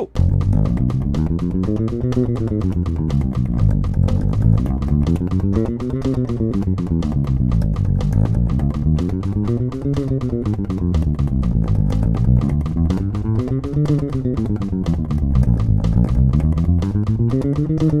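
Four-string electric bass played fingerstyle in a fast chromatic 1-2-3-4 finger exercise, steady eighth notes at 245 bpm, about eight notes a second. The pitch climbs and falls across the strings in repeated sweeps, each about four seconds long.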